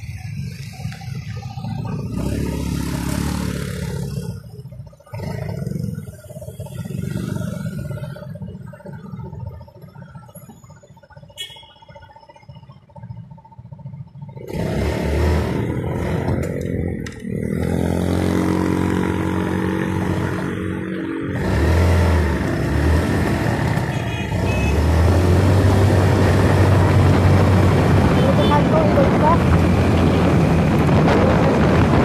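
Night city street traffic with vehicle engines passing. About halfway through it gets louder: an engine running steadily and road noise, as from a moving vehicle, rising to a steady loud rush near the end.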